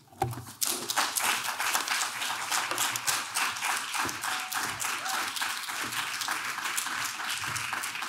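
Audience applauding: many hands clapping in a dense, steady patter that starts just after the start.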